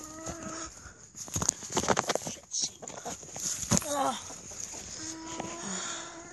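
A farm animal giving two long, level-pitched calls, about a second each, one at the start and one near the end. Between them come rustling and sharp knocks of the phone being handled, the loudest sounds.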